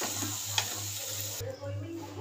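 Thick potato curry still sizzling in a hot kadhai while a metal spatula scrapes and scoops through it, with a few sharp clicks of the spatula on the pan. The sound cuts off abruptly about one and a half seconds in.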